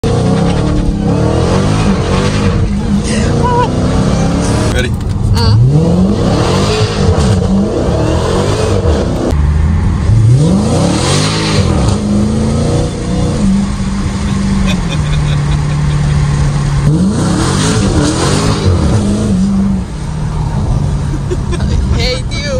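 Dodge Challenger Hellcat Redeye's supercharged 6.2-litre Hemi V8 accelerating hard, heard from inside the cabin. It climbs in pitch again and again as it pulls through the gears, then holds a steadier note for a few seconds before another climb.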